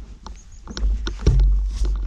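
Mountain bike rolling down a dirt trail: a heavy low rumble of wind and vibration on the bike-mounted camera, with frequent sharp clicks and knocks as the bike rattles over bumps, growing louder about a second in.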